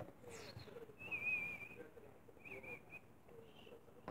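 Faint high, wavering whistle-like tones: a short one falling in pitch near the start, then two held ones, about a second in and again near the three-second mark.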